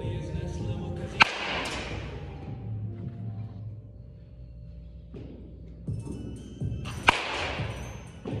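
Two sharp cracks of a baseball bat hitting a ball, about six seconds apart, each with a brief ringing tail, over background music.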